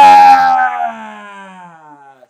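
A man's long, drawn-out vocal howl: loud at first, then sliding slowly down in pitch and fading away by the end.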